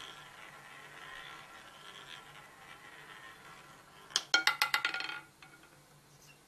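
Roulette ball running round the wheel with a faint steady whir, then about four seconds in a quick rattle of about ten sharp clicks over a second as the ball drops, bounces across the pocket frets and settles in a pocket.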